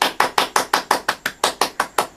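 A rapid, even series of sharp taps or knocks, about six or seven a second.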